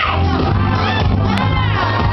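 Loud music with a steady bass line, and voices from a crowd shouting and singing along over it in sweeping, gliding pitches.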